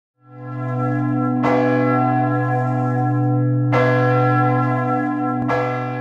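A church bell tolling, struck about four times, each stroke adding to a long, steady low hum with bright overtones. It starts to die away near the end.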